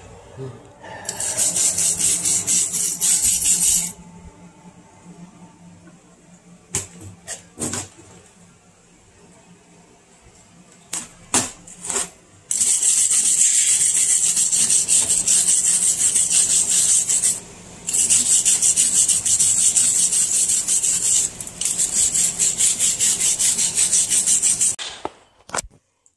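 Hand wire brush scrubbing a freshly MIG-welded stainless steel V-band flange and elbow, cleaning up the weld. It is a fast, raspy back-and-forth scraping in a short spell near the start and three long spells in the second half, with a few light knocks in the quieter stretch between.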